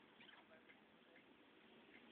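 Near silence: a low steady hiss with a few faint ticks in the first second.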